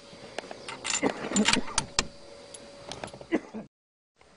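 Handling noise: irregular sharp clicks and knocks with rustling, cutting out suddenly just before the end.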